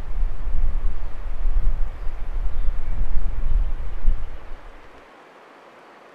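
Low, heavy rumble of wind buffeting the microphone. It is loud for about four seconds, then fades away about five seconds in.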